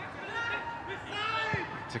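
Footballers shouting to each other on the pitch, with a ball kicked once about one and a half seconds in.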